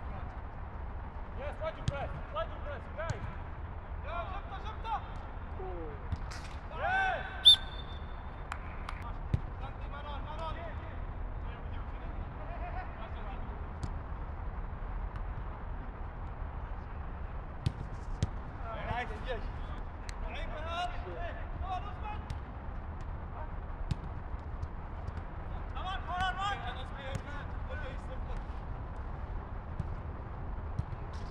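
Players shouting and calling to each other during a football game, with the sharp knock of the ball being kicked now and then. The loudest knock comes about seven and a half seconds in. A steady low rumble lies underneath.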